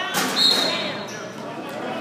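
A basketball sneaker squeaks on the hardwood gym floor with one high, steady squeak lasting under a second, starting about half a second in. Around it is the echoing noise of the game in a large gym.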